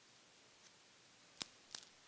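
Two sharp clicks about a third of a second apart, the second followed by a few smaller ticks, in a quiet, hushed room: small handling knocks.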